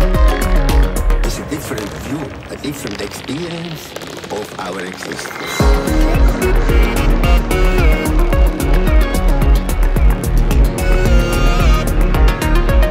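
Progressive psytrance track: the steady pounding kick drum and bass drop out about a second in, leaving synth layers and a rising sweep, then kick and bass return sharply a little over halfway through.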